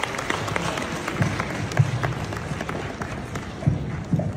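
Audience applauding: a dense patter of many separate hand claps.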